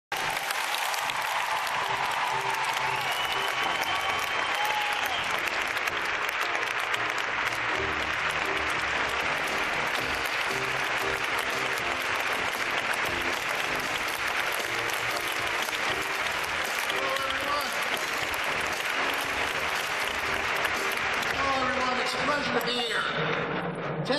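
A large audience clapping steadily throughout, with music playing underneath on the hall's sound system.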